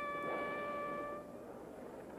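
A horn call: one long held note that fades out a little over a second in.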